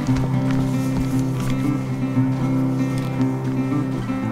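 Background music with sustained, held low notes that change in steps.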